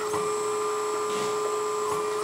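Small electric hydraulic pump motor of an RC excavator running with a steady whine over a lower hum, stopping near the end.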